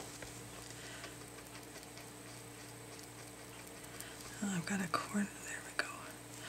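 Faint strokes of a paintbrush working wet gel medium over rice paper on a journal page, with a few soft ticks. A few short murmured voice sounds come about four and a half seconds in.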